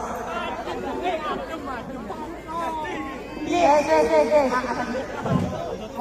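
Several people talking at once in overlapping chatter, with no music; the voices grow louder a little past halfway.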